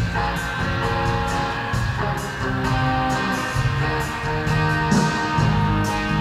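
A live band plays an instrumental passage of a rock song, with electric guitars at the front over a steady beat.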